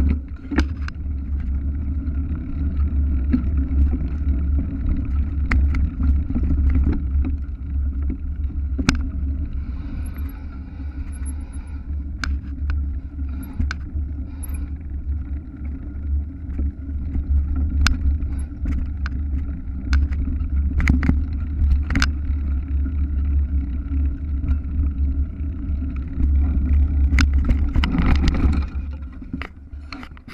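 Mountain bike riding down a rough dirt forest trail, heard from a camera mounted on the bike or rider: a loud, steady deep rumble of wind buffeting and jolting, with scattered sharp knocks and rattles as the bike hits bumps.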